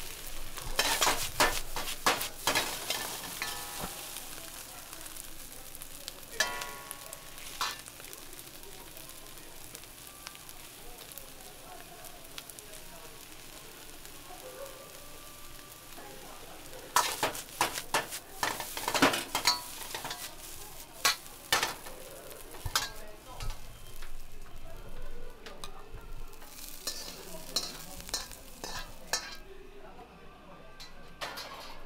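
Fried rice sizzling in a wok over a gas flame, with bursts of a metal ladle scraping and knocking against the wok as the rice is stir-fried. The clatter is loudest near the start and again in the second half.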